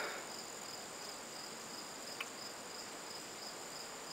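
Quiet outdoor background with a steady, high-pitched insect chirring, and one faint tick about two seconds in.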